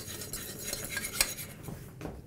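A whisk scraping and clicking quickly against a saucepan, stirring baking soda into hot sugar and golden syrup as it froths up into honeycomb. One sharper clink comes about a second in.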